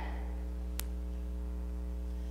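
Steady electrical mains hum with a ladder of higher overtones, and a single short click a little under a second in.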